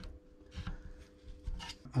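Faint handling noise as a battery lead's connector is pushed onto the XT60 plug of an ISDT FD-200 LiPo discharger, with two soft knocks, one about half a second in and another past the middle.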